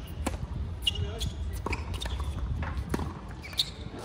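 Tennis ball struck by rackets on an outdoor hard court: a serve hit about a third of a second in, then two more sharp racket hits spaced about a second and a third apart, with lighter ball bounces between them.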